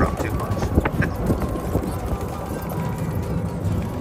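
Golf cart driving along a rough path, its body rattling with irregular knocks and clatter over a heavy low rumble of wind on the microphone.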